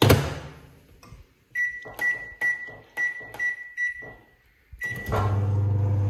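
Microwave oven: the door is pushed shut with a knock, then a string of short keypad beeps with button clicks, and about five seconds in the oven starts running with a steady low hum, beginning to cook popcorn.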